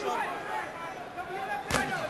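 Shouting from the arena crowd and ringside voices, with one sharp impact about three quarters of the way through: a boxing glove landing a punch.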